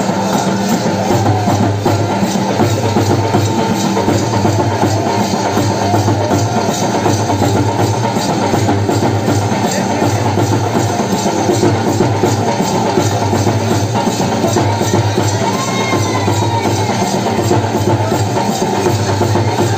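Loud Banjara folk music with a steady drum beat, continuous through the dance, with a brief sung phrase near the end.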